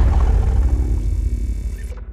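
Logo-intro sound effect tailing off: a deep low rumble with a faint hiss above it, fading steadily, the hiss cutting off just before the end.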